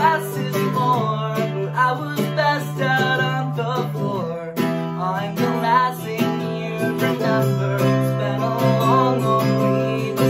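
Acoustic guitar strummed in steady chords with a man singing over it.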